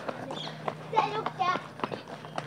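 Footsteps of several people walking and a child running on a concrete path, an irregular run of short, sharp taps, with brief voices calling out about a second in and again shortly after.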